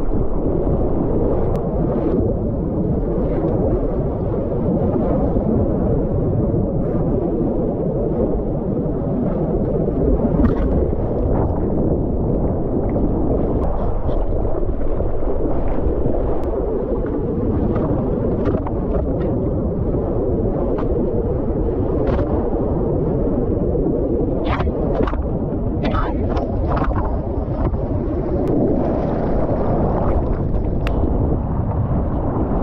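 Seawater rushing and splashing against a surfboard right beside the camera as the surfer paddles, with wind on the microphone. Short, sharp splashes break through the steady wash, more of them near the end.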